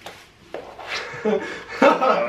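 People's voices reacting with short vocal sounds and laughter, louder toward the end, after a sharp click at the start.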